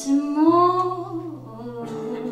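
A woman singing live into a microphone, holding a long note over quiet instrumental accompaniment.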